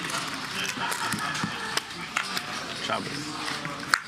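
Low murmur of players talking around a poker table, with a few short sharp clicks of handled poker chips, the loudest near the end.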